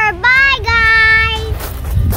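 A child's high voice calling out in a sing-song that slides up and down, then holds one long steady note before stopping about one and a half seconds in.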